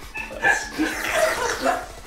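People chuckling, with short wordless voice sounds coming in several brief bursts.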